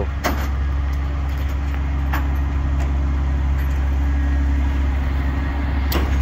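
Semi tow truck's diesel engine idling with a steady low hum. Two short sharp clanks sound over it, one just after the start and one about two seconds in.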